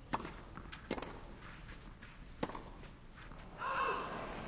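Tennis ball struck by rackets in a rally on a clay court: three sharp hits, the second less than a second after the first and the third about a second and a half later, with fainter ball bounces between them. Near the end a burst of voices rises as the point ends.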